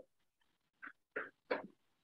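Three short, faint voice calls in quick succession, off the microphone: people in the room calling out answers to a question.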